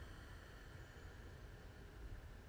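Near silence: a faint, steady low rumble and hiss of outdoor room tone.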